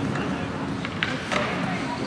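Outdoor city street ambience with indistinct voices of passers-by, and a couple of short sharp clicks a little after one second in.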